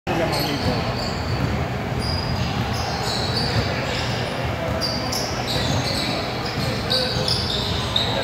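Basketball dribbled on a hardwood gym floor, with sneakers squeaking in short high chirps and the voices of players and spectators echoing in the large hall.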